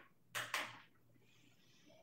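Two sharp taps in quick succession, about a fifth of a second apart, followed by a faint hiss.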